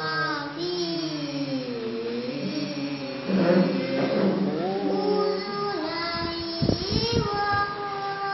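A girl's voice reciting the Quran in melodic tilawah style: long held notes that slide and waver in pitch, phrase after phrase. A few low thumps come about two-thirds of the way through.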